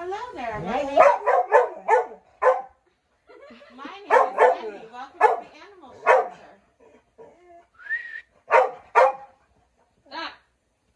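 A large black dog barking in three runs of quick, short barks, with pauses of a second or two between the runs.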